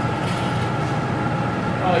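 Steady roar of a gas-fired glory hole (glassblowing reheating furnace) as a glass gather coated in colour chips is reheated in it to melt the chips in.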